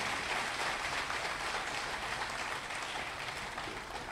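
Audience applauding, heard faint and even through the podium microphone, dying away near the end.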